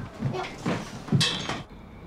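A few short knocks and rustles of people hurrying about a room and handling their belongings, the loudest just past a second in. Near the end it cuts to a quieter background with faint steady high tones.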